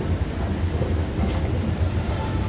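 Escalator running: a steady low mechanical rumble, with one short click a little over a second in.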